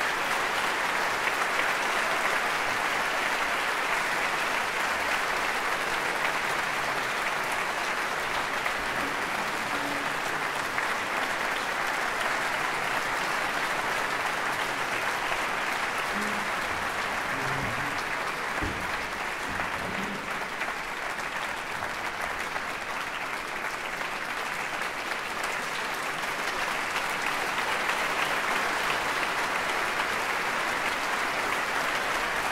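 Sustained applause from a large audience in a concert hall: many hands clapping in a steady, dense wash, easing slightly midway and swelling again near the end.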